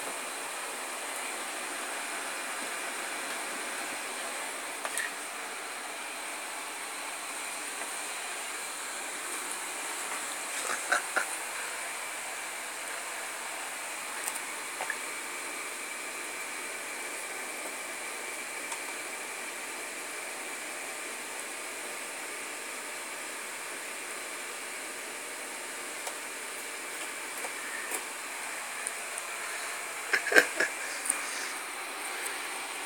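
Steady hiss with a few faint clicks and knocks, the loudest a pair about eleven seconds in.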